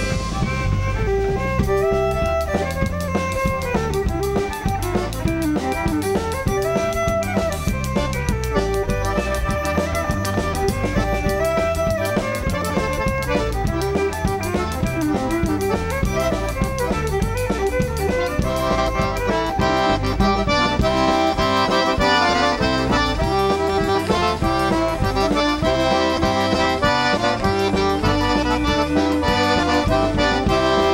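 Cajun band playing an instrumental break with a steady drum-kit beat. A fiddle carries the melody, and about two-thirds of the way through the Cajun accordion comes to the fore and the sound grows fuller.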